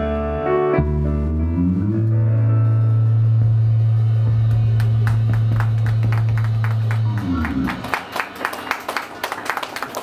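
A live rock band's final chord ringing out over a long held bass note, which dies away about three-quarters of the way through. Scattered sharp claps follow near the end.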